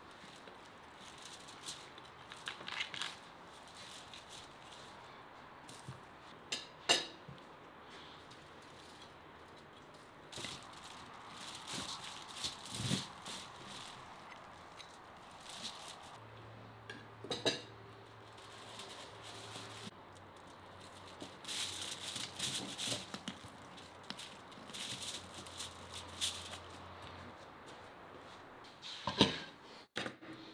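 A long knife carving a whole spit-roasted lamb: crisp roasted skin crackling and tearing, and the blade scraping and clicking against bone and the foil-covered board, with a few sharp knocks now and then.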